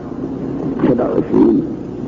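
A man speaking Arabic in an old, muffled recording, the voice low and rough.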